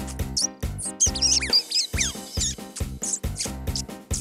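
Fast, rhythmic cartoon background music with high-pitched, squeaky cartoon mouse voices over it. Falling whistle-like glides come about a second in and again near two seconds.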